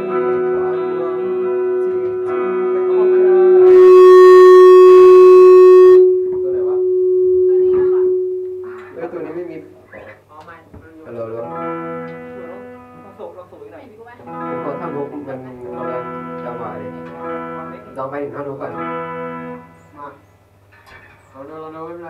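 Amplified electric guitar: a held note rings out, swelling loud around four seconds in and fading out, then chords strummed in short repeated phrases.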